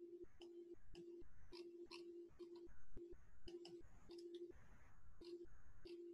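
A faint, steady low tone keeps cutting in and out irregularly, with soft clicks between.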